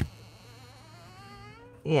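A faint, slowly rising hummed tone from a man's voice, wavering slightly in pitch, that leads into speech near the end.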